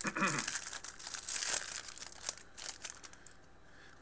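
A Magic: The Gathering booster pack's foil wrapper crinkling as it is torn open by hand, fading out near the end. A brief throat clear at the start.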